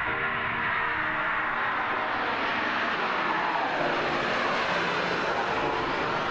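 Jet airliner's engines at takeoff thrust as it lifts off and climbs away: a loud, steady rush of jet noise with no break.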